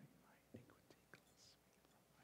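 Near silence, with a priest's faint whispered prayer at the altar and a few light clicks of vessels set down about half a second and just over a second in.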